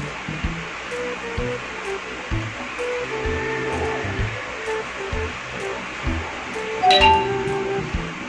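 Instrumental background music with held notes over a steady beat, with a brief louder sound about seven seconds in.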